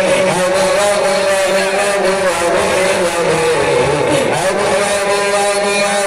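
Men's voices singing a long held note into microphones, unaccompanied devotional chant with a slight waver, the pitch dipping about four seconds in and then settling back.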